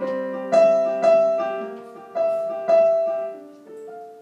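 Casio electronic keyboard played with a piano sound: a slow introduction of sustained chords, each struck and left to ring and fade before the next, about five strikes in all, the last one softer.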